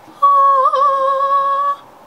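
A woman's long, high-pitched, held vocal note, an "ooh" of delight, sustained for about a second and a half with a brief wobble in pitch partway through.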